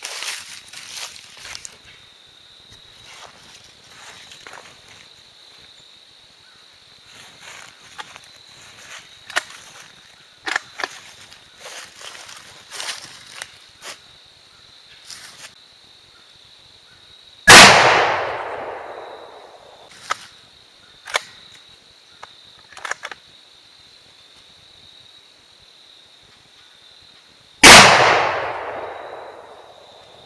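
Two rifle shots from a Ruger American Ranch in 300 Blackout firing supersonic 125-grain PPU hunting loads, about ten seconds apart, each with an echo that fades over about two seconds. Before the first shot there are light clicks and rustles of movement in dry leaves.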